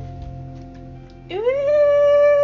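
Electric guitar's final chord ringing out and fading. Then, a little over a second in, a dog's single long howl that slides up, holds one steady pitch and slides back down.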